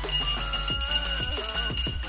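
Background music with a steady beat and a melody, with a bright, high bell-like ringing held over it.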